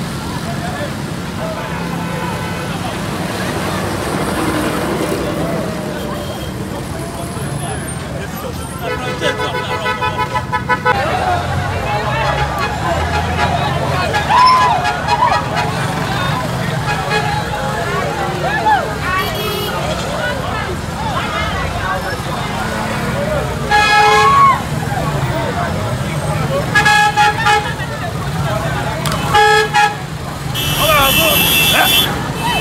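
Street crowd chatter and traffic, with a vehicle horn honking in a rapid run of beeps about a third of the way in and several shorter honks in the second half.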